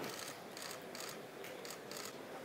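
Quiet hall room tone with faint, scattered clicks and rustles, about half a dozen in two seconds.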